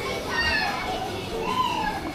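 Children's voices in an indoor play area: scattered high-pitched calls and chatter from young children over a steady background hubbub.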